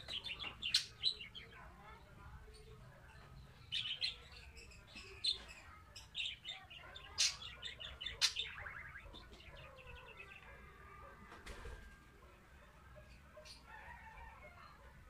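Small birds chirping in short, rapid runs of high chirps, several runs in the first nine seconds, then quieter.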